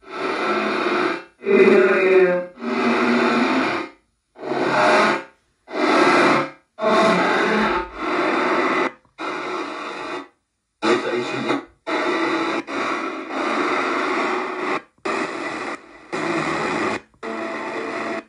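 Ghost box radio sweeping through stations, fed through an effects box and out of a small speaker. It plays short bursts of static and broken broadcast fragments, each about a second long, cut apart by brief silences.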